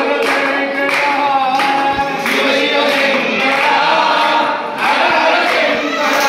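A group of men singing a Hindu devotional bhajan together, clapping their hands along with the song.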